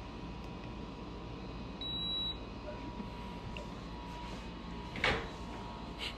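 Handheld infrared thermometer giving a single high beep lasting about half a second as it takes a reading on a cat's forehead. A short burst of noise comes near the end.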